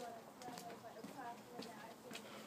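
Faint, indistinct voices talking, with a few irregular soft clicks.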